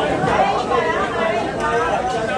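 Overlapping background chatter: several people talking at once, no single voice standing clear.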